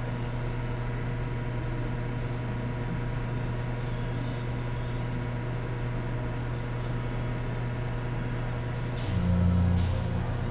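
Steady low hum of a vibrating sample magnetometer system running a hysteresis loop test as its field is stepped. About nine seconds in, the hum turns louder and deeper, with two short clicks.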